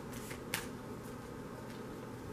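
A deck of oracle cards being shuffled by hand, faint, with one sharp click of the cards about half a second in.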